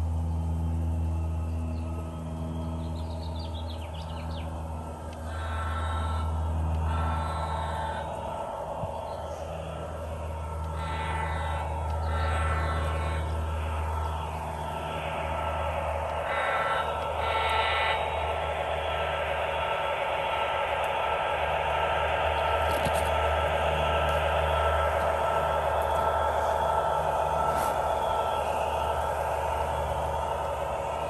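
O-scale model diesel-led freight train rolling along the track: a steady low electric-motor and engine hum, with several short bursts of higher tones in the first half and the clatter of many wheels on the rails building up and holding steady as the cars pass.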